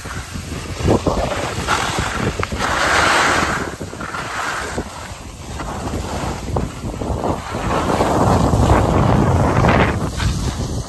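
Wind buffeting the microphone of a camera carried downhill on skis, mixed with the hiss and scrape of skis sliding over firm, groomed snow. The rush swells about three seconds in and again, heavier and lower, near the end.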